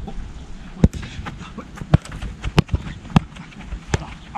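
A football being struck and touched by a player's feet as he sets off dribbling: about seven sharp knocks, irregularly spaced, roughly one every half second, with his running steps.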